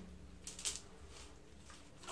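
Faint rustling of a mesh bag of porous filter media being handled, with a couple of soft clicks about half a second in.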